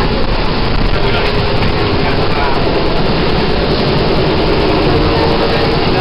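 Steady running noise inside a moving passenger vehicle: a low rumble under an even hiss, with people's chatter.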